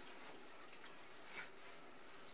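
A fork clicking faintly against a bowl twice, a little under a second apart, over quiet room tone.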